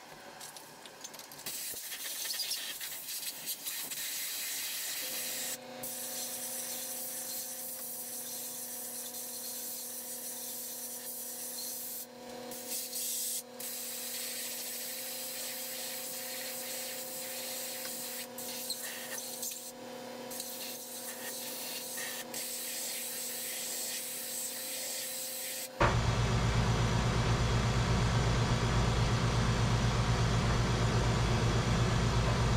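Compressed air hissing from a blow gun in long blasts with a few short breaks, cooling hot steel knife blades in stainless-foil packets pressed between aluminium plates: an air quench for air-hardening steels such as D2. Near the end a much louder, steady machine noise starts suddenly and drowns out the hiss.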